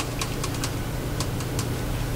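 Paintbrush being rinsed in a water container: a scatter of light, irregular clicks and taps over a steady low hum.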